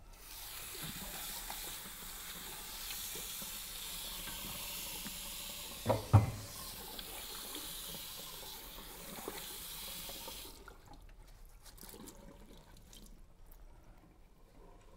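Water running from a tap into a small sink for about ten seconds, then turned off. Two knocks sound about six seconds in.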